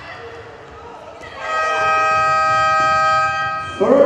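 Arena end-of-period horn sounding one steady, loud tone for a little over two seconds as the game clock reaches 30:00, signalling the end of the first half of a handball match.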